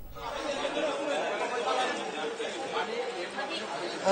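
Crowd chatter: several people talking at once in the background, with no single voice standing out.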